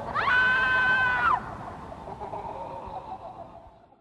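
A long, high-pitched scream that glides up, holds one steady pitch for about a second and drops away, followed by a fainter trailing sound that fades out.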